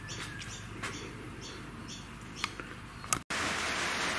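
Rain falling: a steady hiss with scattered light ticks. After a short break about three seconds in, the hiss is louder and denser.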